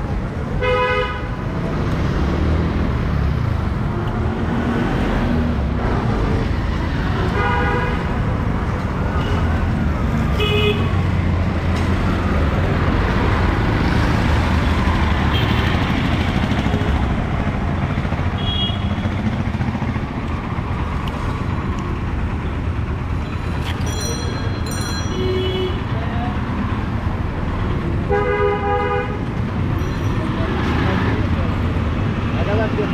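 City street traffic: a steady rumble of engines, with vehicle horns honking repeatedly in short toots throughout. One of the clearer toots comes about a second in, and a longer one comes near the end.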